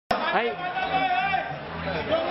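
A man's voice through a handheld microphone over the chatter of a crowd of guests.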